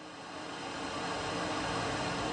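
Ambient drone score built from field recordings and studio samples, fading in: a hiss-like wash with faint steady tones, growing louder throughout.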